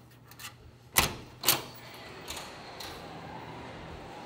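Hotel-room door's lever handle and latch being worked as the door is opened: small clicks, then two sharp clacks about a second in, half a second apart, and two lighter clicks after, followed by steady background noise.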